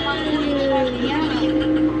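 A person's voice with drawn-out, wavering pitches, over a steady low hum.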